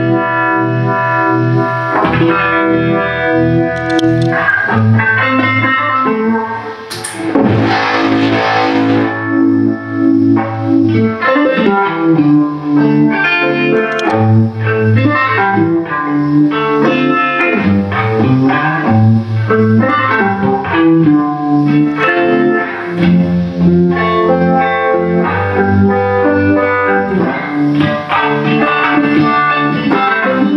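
Electric guitar, a Fender Stratocaster, played through a Voodoo 67 NKT275 fuzz and a Gypsy-Vibe uni-vibe into an amplifier: distorted single notes and chords, with a brief noisy burst about seven seconds in.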